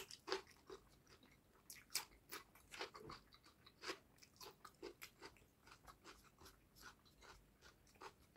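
Close-up, faint mouth sounds of a person eating rice and fish curry by hand: irregular wet clicks and crunches of chewing, several a second, with a sharp crunch at the very start as he bites into a raw green chilli.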